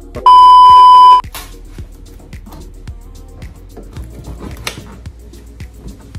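A loud, steady electronic beep lasting about a second, just after the start, over background music that runs on quietly underneath.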